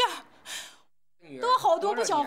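A woman speaking Chinese in a distressed voice. About half a second in she takes an audible breath, pauses briefly, and then speaks again.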